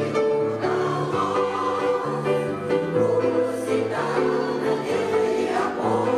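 Women's veterans' choir singing a song in harmony, with a low bass line stepping between notes underneath.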